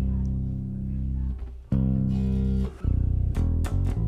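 Waterstone five-string electric bass guitar played: a long sustained low note that slowly fades, a second held note about a second and a half in, then a quick run of shorter plucked notes with sharp attacks near the end.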